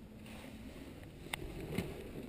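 Faint handling noise from a handheld camera being moved around inside a car's cabin: low rustling with two small clicks, one just past halfway and one near the end.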